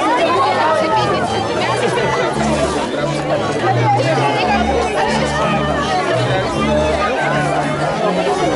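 Crowd chatter: many voices talking over one another, with music playing underneath, its bass line a run of held low notes.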